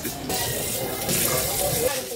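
Water running steadily from a sink faucet over hands being washed.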